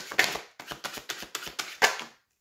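A tarot deck shuffled overhand by hand: quick clicks and slaps of card edges several times a second. A louder slap near the end as several cards spill out of the deck onto the table.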